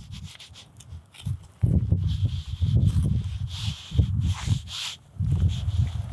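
Hands and a small knife working a pheasant carcass: a rubbing, rustling noise of skin, feathers and meat being cut and pulled from the breastbone, coming in uneven bursts from about a second and a half in.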